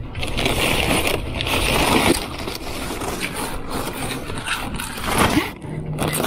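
Crinkling and crackling of the plastic wrap on a case of bottled water as it is handled and pulled off the shelf, an irregular run of rustles and small cracks that eases off near the end.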